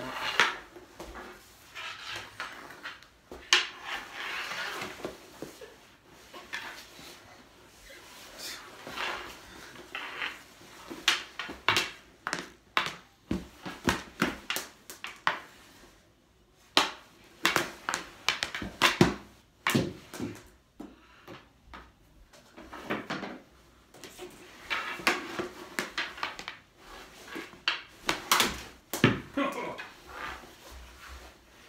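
Mini hockey balls being shot at a goalie, striking his pads, stick and the floor in a run of sharp, irregular knocks and smacks, some in quick succession.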